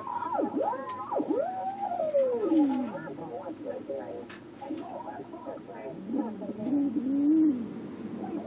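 AM radio whistling with the heterodyne beat note between the Philco 077 signal generator and the station on 820 kc. The whistle swoops up and down in pitch as the generator's trimmer capacitor is turned, and falls to a low wavering tone as the generator is brought close to zero beat with the station. The station's own audio is faint underneath.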